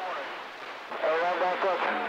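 Voice heard over a CB radio receiver: a stretch of band noise and hiss, then a voice coming through the radio about a second in.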